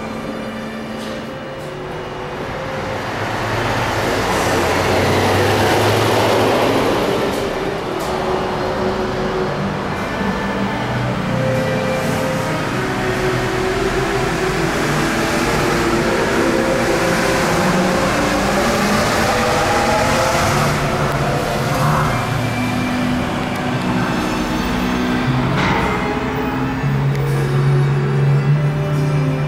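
Disney Resort Line monorail pulling out of the station: its motor whine slides in pitch as it gets under way, over a rushing noise that swells a few seconds in, with music playing alongside throughout.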